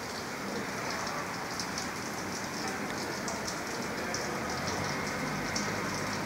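Steady light rain: an even hiss with scattered faint drop ticks.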